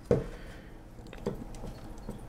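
Quiet handling of the Mamiya Six Automat's metal top plate as it is seated back onto the camera body, with a soft knock at the start and a lighter one just past halfway.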